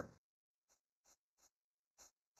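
Near silence with four faint, short clicks spread over the last second and a half.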